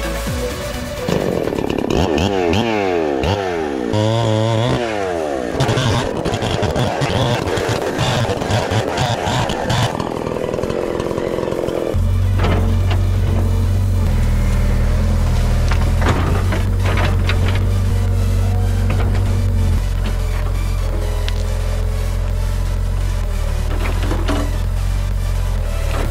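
Electronic dance music with a heavy steady bass, over a gas chainsaw revving up and down as it cuts through a log for roughly the first half.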